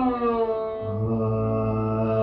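Carnatic classical music in raga Sankarabharanam: one long held note that glides down briefly at the start and then stays steady.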